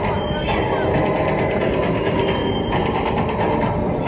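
Busy street ambience: a crowd's indistinct chatter over a steady low traffic rumble.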